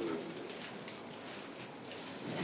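A pause in a man's speech: the end of a drawn-out spoken word at the very start, then low, steady room tone.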